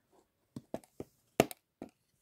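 A few light, sharp taps and knocks of hands handling a clear acrylic enclosure, the loudest a quick pair about two-thirds of the way through.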